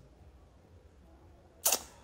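A pause with only faint room tone, then, about one and a half seconds in, one short, sharp hissing breath from the speaker.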